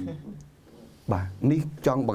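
Only speech: a man talking, with a short pause of under a second before the talk goes on.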